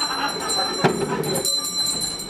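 A bell ringing over and over in quick, uneven shakes, its high tones sustained throughout. A sharp knock just before the middle is followed by about half a second of duller low noise.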